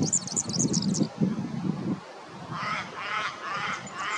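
Superb fairy-wren singing a fast, high reeling trill for about the first second, over a low rumble of wind buffeting the microphone. In the second half, a lower call is repeated three or four times by another animal.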